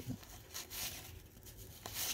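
Faint rustle of cardboard baseball cards sliding against each other as they are flipped through by hand, with a small click near the end.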